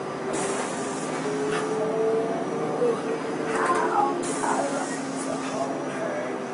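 Inside a city bus: the steady drone of the bus, with two short bursts of hiss, one just after the start and one about four seconds in.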